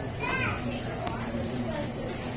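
Background murmur of voices, with a child's short, high-pitched vocal sound about half a second in and a light click about a second in.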